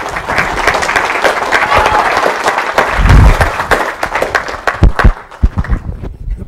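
Audience applauding in a lecture hall, a dense patter of clapping that thins out near the end. A loud low thump comes about halfway, and a few knocks near the end.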